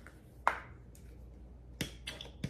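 Two sharp plastic clicks, a loud one about half a second in and a smaller one near the end, from handling a pump-top foam bottle of hair mousse as it is readied to dispense.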